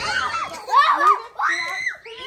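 Young girls screaming in high shrieks, mixed with giggles, loudest just under a second in.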